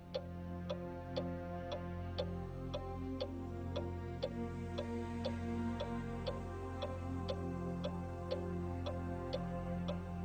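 Clock ticking, about two sharp ticks a second, over a low sustained synthesizer drone with slowly changing chords.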